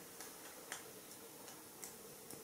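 Faint, irregular small clicks as a young macaque grooms a man's face, picking at his skin with its fingers and mouth, over a steady low hiss.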